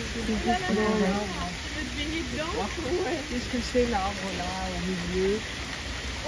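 Steady rain falling on a pond and garden foliage, an even hiss, with voices talking over it throughout.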